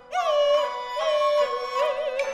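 A woman singing a Kunqu opera aria, holding long notes with vibrato, over a traditional Chinese instrumental accompaniment. A new sung phrase begins just after the start.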